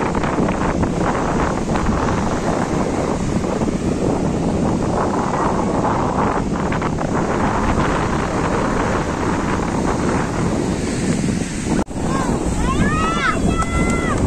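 Sea surf breaking and washing up the sand, with wind buffeting the microphone. Voices call out near the end.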